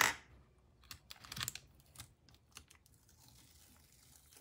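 Sketchbook paper pages being handled: a sharp paper rustle at the start, a softer rustle about a second and a half in, then a few light clicks.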